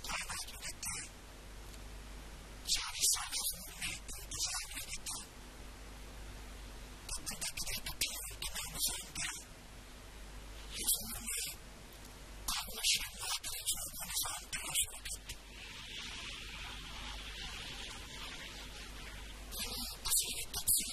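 A man's speech through a microphone and PA, delivered in short phrases with pauses between them, over a steady low electrical hum.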